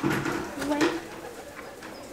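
A pigeon cooing: a few low, wavering coos in the first second.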